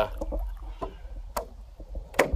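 Stand-up paddleboard paddling sounds: light water noise and two faint knocks from the paddle, over a low wind rumble on the microphone.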